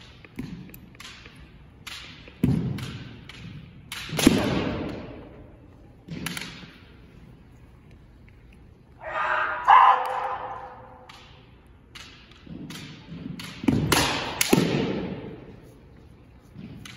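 Kendo fencers sparring with bamboo shinai: a string of sharp thumps and clacks from stamping footwork on a wooden floor and shinai strikes, with a loud shout about nine seconds in, all ringing in a large hall.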